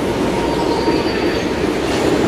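Singapore MRT train running past on the elevated concrete viaduct: a steady rumble with a faint high whine in the middle.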